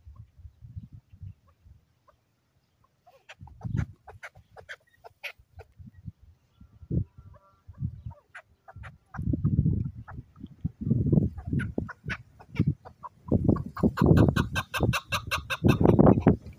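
Chukar partridge calling: a run of short clucking notes that grows louder and quicker over the last few seconds.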